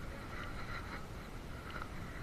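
Steady low rumble of wind on the microphone and the sea, with faint far-off sounds above it and no distinct event.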